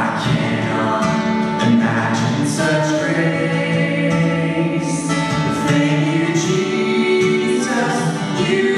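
A man and a woman singing a duet, accompanied by a strummed acoustic guitar.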